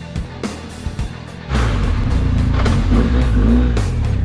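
Background music with a beat, then about a second and a half in, a BMW R 1250 GS motorcycle comes in loudly, heard from on board as it rides with its boxer-twin engine running.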